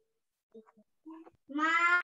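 A single short, high-pitched call about one and a half seconds in, its pitch rising slightly, heard as "ma", with a few faint small sounds before it.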